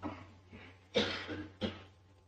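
A person coughing twice in quick succession, about a second in, each cough short and sharp.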